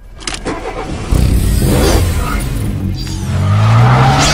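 Car engine starting up and revving, with a rising rev near the end.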